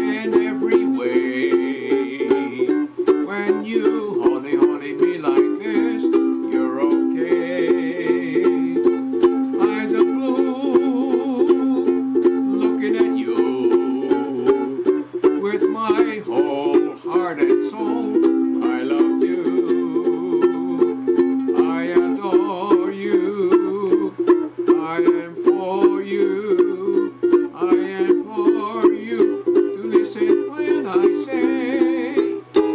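A ukulele strummed in a quick, even rhythm, chords changing every few seconds as the melody of a song is played on it alone.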